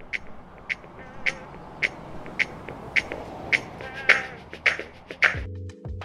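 A song filtered thin, as if playing from a car radio, with its beat ticking a little under twice a second, over a steady rushing car-pass sound effect. About five seconds in it gives way to a low, sustained music cue.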